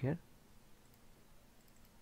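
A few faint computer mouse clicks, spaced apart.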